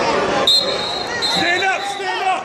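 Referee's whistle blown about half a second in: one long, high, steady blast with a brief break in the middle, the signal that starts the wrestling from referee's position. Spectators' voices and shouts underneath.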